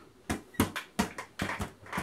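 Inflatable beach ball being batted up repeatedly by hand, a quick run of light slapping hits, a few a second.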